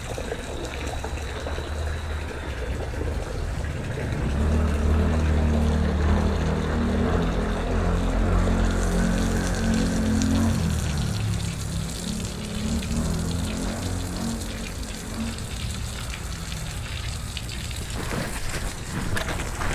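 Water from a hose spray wand hissing and splashing onto concrete, with music playing in the background. The music swells from about four seconds in and fades back after about eleven seconds.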